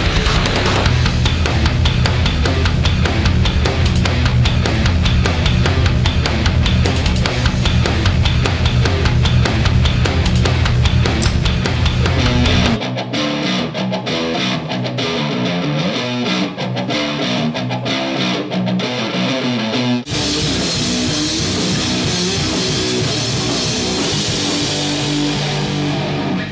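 Heavy rock music with electric guitar and drums. About 13 s in the sound changes abruptly, its bass dropping away and its top thinning, and about 20 s in the full sound returns.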